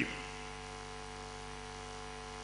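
Steady electrical mains hum with several constant low tones over a faint hiss. A man's voice trails off just at the start.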